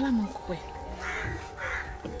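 An animal calling twice in the background, two short harsh calls about half a second apart.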